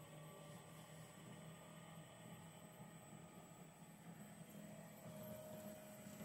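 Near silence: a faint steady hum of a fine-wire respooler running, its winding speed just turned up.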